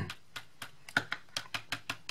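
A Colorbox stylus tool's foam tip dabbing dye ink onto paper: a run of light, uneven taps, about four or five a second.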